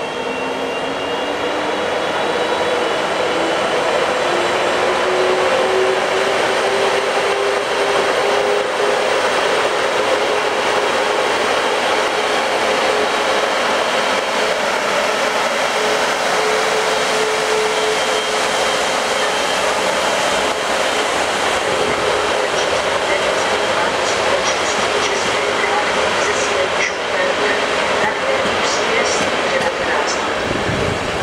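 A pair of ČD electric locomotives, the lead one class 150, hauling an express train past with a loud steady rush of running gear and motors; a motor whine rises in pitch over the first few seconds and then holds steady. Near the end the coaches roll by with a run of wheel clicks over rail joints.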